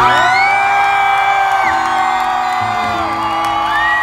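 Live band holding sustained closing chords at the end of a pop song while a large concert crowd screams and whoops over it.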